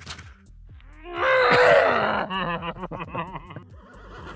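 A man's loud yell of pain about a second in, right after a full-power slapjack blow to the thigh, breaking into a run of pained laughter.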